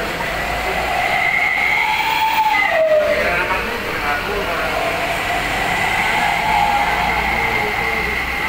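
A large vehicle's engine running with a high whine that wavers in pitch, sliding down about three seconds in and then holding steady, over a bed of background voices.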